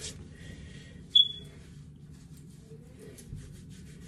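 Oiled hands rubbing together and then working through hair: a faint, soft scratchy rustle. About a second in, a single sharp click with a brief ringing tone stands out as the loudest sound.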